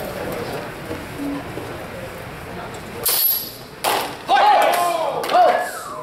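Steel longsword blades clash about halfway through with a short, high metallic ring, followed by a sharp knock and then loud shouts. Before that there is only a low murmur of voices in a large hall.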